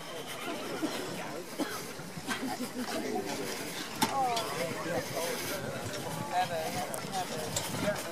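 Voices of several riders talking and calling out some way off, over a steady hiss, with a single sharp click about four seconds in.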